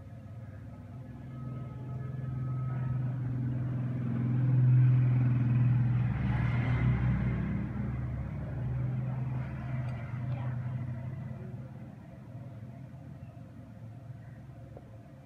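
A motor vehicle passing by, its engine hum swelling over about five seconds and then fading away.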